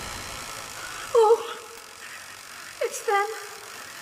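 A woman's short, wavering moans or whimpers over a steady background hiss. The loudest comes about a second in, and two more follow near the end.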